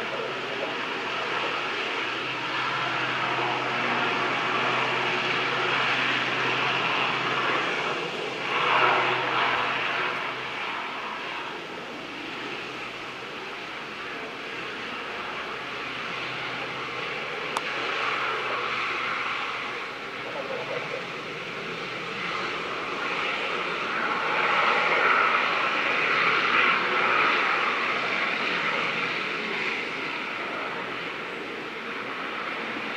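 Royal Navy Westland Sea King rescue helicopter's rotor and twin turboshaft engines running as it lifts off and flies away low. A steady low engine hum fades out about ten seconds in, the sound is loudest around nine seconds, and it swells again near the end.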